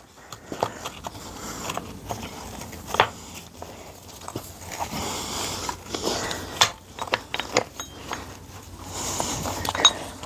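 Silica sand pouring in a stream out of the bottom opening of a sandblasting pot as the pot is emptied: a steady hiss with scattered clicks and taps.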